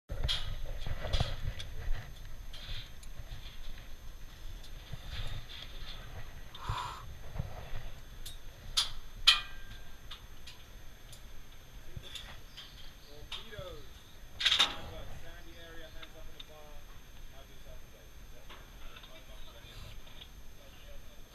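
Scattered clicks and knocks from zip line harness hardware, carabiners and trolley, over a low rumble, with faint distant voices in the background.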